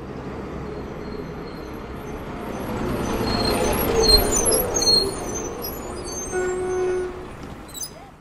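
Sound effect of a school bus driving up and pulling to a stop: engine rumble swelling to a peak about halfway, then fading as it stops, with a brief held tone near the end.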